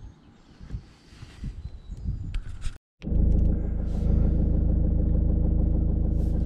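Faint quiet with a few small knocks, then, after an abrupt cut about three seconds in, the Citroën C3's engine running as a steady low rumble with a hum, heard from inside the cabin.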